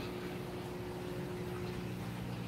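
Water pump of a turtle tank running: a steady low electrical hum with a faint, even watery hiss. A higher hum tone drops out near the end.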